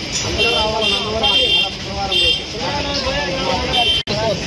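A crowd of people talking and calling out together in a street, with short high-pitched toots sounding again and again over the voices.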